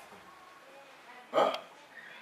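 A single short, loud wordless vocal sound, a brief exclamation from a man, about one and a half seconds in, set against quiet room tone.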